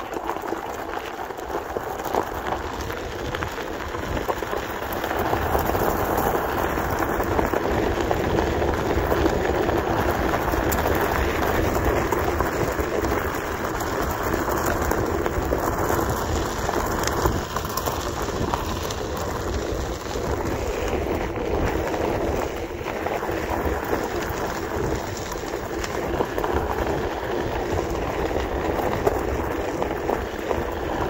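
Steady rushing, crackling noise of a Onewheel electric board's tyre rolling over a gravel trail.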